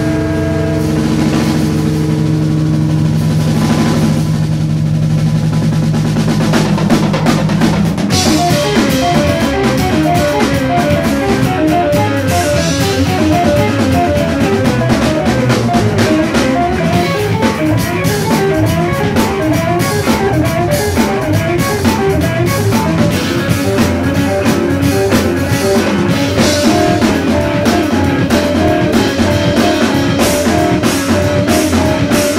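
Live rock band playing with guitar, bass and drums. For the first several seconds low notes are held, then about eight seconds in the whole band comes in hard, with busy drumming under a fast repeating guitar figure.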